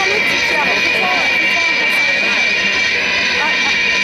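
Loud, steady electric drone from a band's stage amplification, held tones with no beat, as a song's intro builds, with audience voices chattering over it.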